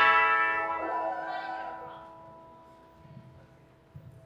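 A single chord struck on amplified electric guitars, ringing and slowly fading away over about three seconds.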